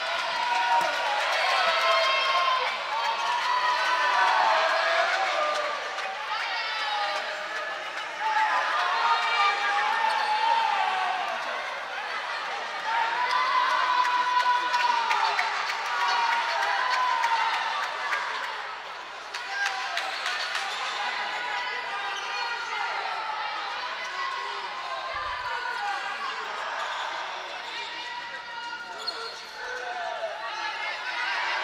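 Voices of a crowd shouting and calling out in a large sports hall, rising and falling in phrases, with a basketball bouncing on the hardwood court.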